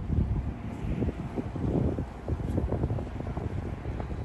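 Wind buffeting a phone's microphone outdoors: an irregular low rumble with faint hiss above it.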